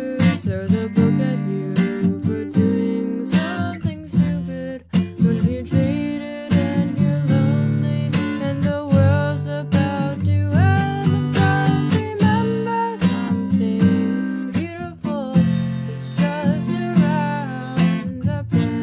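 Acoustic guitar strumming chords steadily in an instrumental passage of a song, with a regular stroke rhythm and ringing chord tones.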